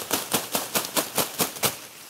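Cotton plants bent over a drop cloth and shaken vigorously by hand: a quick, even run of leafy rattling strokes, about five a second, that stops shortly before the end.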